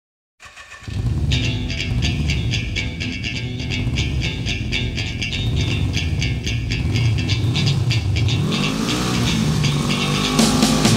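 After a brief silence, a heavy metal track opens with a motor engine running and revving, mixed with the music. The engine's pitch swoops up and down near the end.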